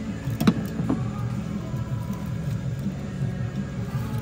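Two short hard knocks from parts being handled in a car's engine bay, the louder about half a second in and a smaller one just under half a second later, over a steady low background.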